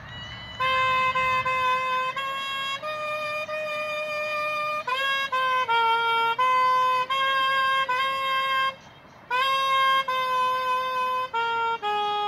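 Solo saxophone playing a slow melody of held notes, with a breath pause about nine seconds in.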